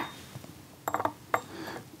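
A few light clicks of porcelain, about a second in, as fingertips spread wet tea leaves on a small porcelain dish beside a gaiwan.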